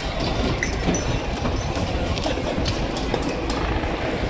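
Loud street-disturbance ambience: a steady, dense rumble with scattered sharp clicks and clatters throughout.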